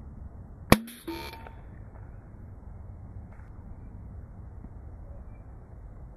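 Metadyne Havoc launcher firing a Nerf Vortex football on compressed air: one sharp, loud shot under a second in, with a short fainter sound just after it.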